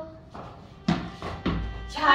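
Two sharp knocks about half a second apart as a tennis ball bounces on the tiled floor and is then struck by a cricket bat.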